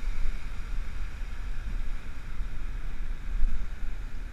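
Wind buffeting the microphone in an uneven, gusting rumble, over the steady hiss of waves breaking and washing up a sandy beach.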